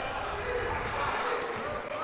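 Faint gymnasium ambience: a low, echoing murmur of voices in the hall, with a basketball being dribbled on the hardwood court.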